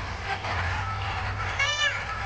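Noisy crowd hubbub over a low sound-system hum. Near the end comes a short, high vocal note that bends up and down: the start of an autotuned song's singing over the PA.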